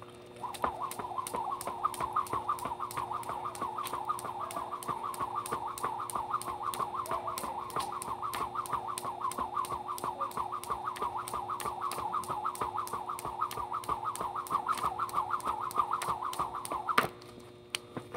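Skipping rope: the rope whirs through the air and clicks against the ground on each turn in a quick, even rhythm. It starts about half a second in and stops about a second before the end.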